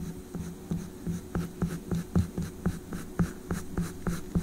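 Orange oil pastel scratching across sketchbook paper close to the microphone in short strokes, about three a second, over a faint steady hum.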